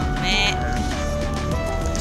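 Background music with a held, stepping melody, and a brief high-pitched laugh about a quarter of a second in.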